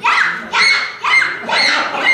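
Someone imitating a small dog yapping: a quick run of high, short yips, about two a second, each rising and then dropping in pitch.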